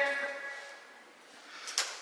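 A voice fades out into quiet room tone, then a single short click sounds near the end.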